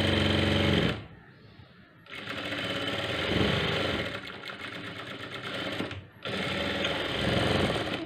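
Industrial sewing machine stitching a seam through cotton dress fabric. It runs in three stretches, stopping for about a second near the one-second mark and briefly again about six seconds in, with its speed rising and falling as the fabric is guided.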